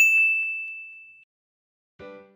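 A single bright ding, a logo chime sound effect: one sharp strike that rings on at a single high pitch and fades away over about a second.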